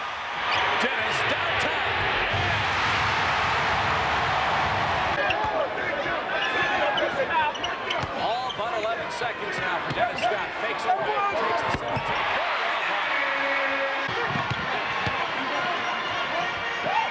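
Basketball arena crowd noise swelling into a loud cheer in the first few seconds. Then a basketball is dribbled on the hardwood court, with sharp bounces, short squeaks of sneakers and a steady crowd murmur.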